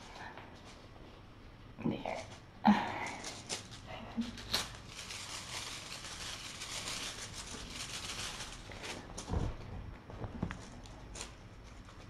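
Rustling as kittens scramble and jump after a swinging feather wand toy on a fleece blanket, with a sharp knock early on and a couple of soft thumps of landings later.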